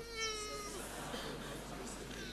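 A woman's short, high-pitched wail, held for about half a second and dipping at the end, then only a faint hall murmur.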